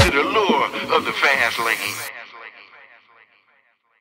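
The end of a jackin house track: the kick drum drops out and a vocal snippet is left repeating with echo, fading away to silence about three seconds in.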